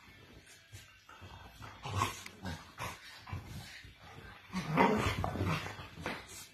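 Two dogs play-fighting, growling and barking in irregular bursts, loudest about two seconds in and again near the end.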